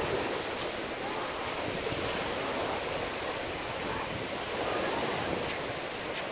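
Small ocean waves breaking and washing up a sandy shore, a steady rush that swells near the start and again about five seconds in, with some wind on the microphone.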